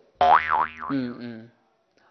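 Comic twangy 'boing' sound effect, about a second and a half long: a steady low pitch with a tone above it that wobbles up and down twice, then stops.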